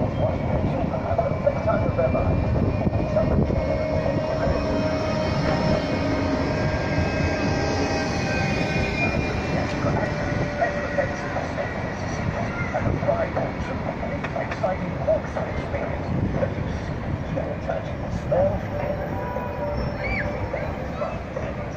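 Bombardier Flexity 2 tram running past on street track, its motor whine and wheel noise loudest about halfway through.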